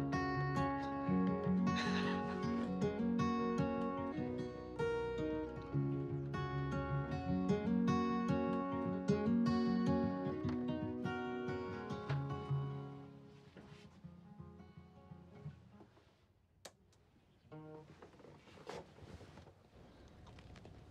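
Acoustic guitar playing a song, chords and melody notes, fading out about two-thirds of the way through. A couple of faint clicks follow near the end.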